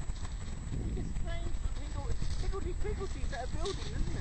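Footsteps crunching on shingle, with wind rumbling on the microphone. Voices talk indistinctly from about a second in.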